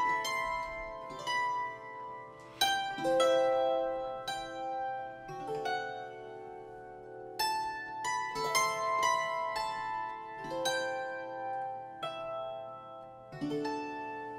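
Master Works DulciForte hammered dulcimer, its upper-range strings plucked in a slow melody of single notes and small clusters that ring on and overlap with long sustain. It has a sparkling, music-box-like sound.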